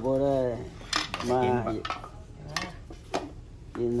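A metal spoon clinking against bowls, a few separate sharp clinks, between stretches of a person talking.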